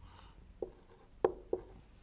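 Whiteboard marker writing on a whiteboard: three short squeaky strokes over the second half.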